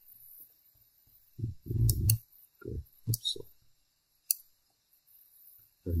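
A computer mouse clicking a few times: a pair of clicks about two seconds in and a single sharp click a little past four seconds. Short, low vocal sounds fall between them.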